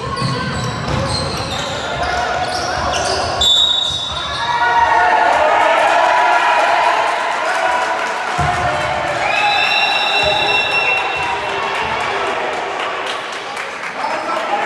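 Basketball ball dribbling on a hardwood court for the first few seconds, then voices of players and spectators calling out across the hall. A short high squeak or whistle tone comes about three and a half seconds in, and a longer one around ten seconds.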